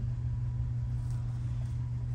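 Steady low hum with a faint rumble beneath it, unchanging throughout.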